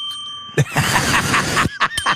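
A single bell ding as from a gas-station air pump, played as a joke sound effect, then laughter in quick repeated bursts from about half a second in.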